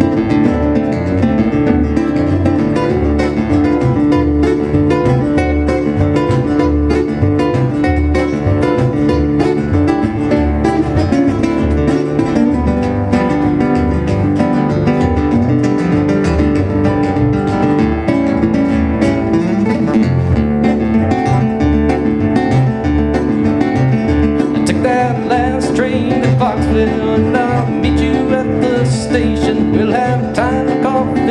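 Instrumental break played live on two fingerpicked guitars in a country thumb-picking style, with a steady plucked washtub bass pulse underneath.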